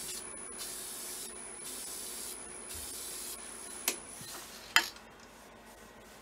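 Aerosol can of clear lacquer spraying in several short hissing bursts onto a bowl turning on a wood lathe. Under it the lathe runs with a steady hum and a high whine that stop about four seconds in, and two sharp clicks follow.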